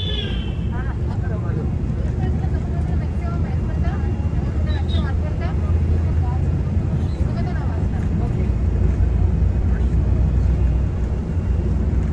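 Volvo multi-axle coach's engine and road noise heard from inside the driver's cab: a steady low drone that grows slightly louder as the bus drives on, with faint voices in the background.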